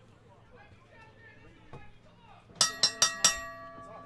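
Wrestling ring bell struck four times in quick succession about two and a half seconds in, each strike ringing on with a high metallic tone: the bell signalling the start of the match.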